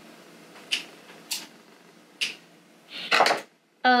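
Scissors snipping through gathered fabric: three short, sharp cuts spaced about half a second to a second apart, followed by a longer, louder rustle near the end.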